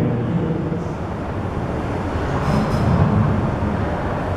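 A steady low rumbling noise with no voices, strongest in the bass and swelling slightly about three seconds in.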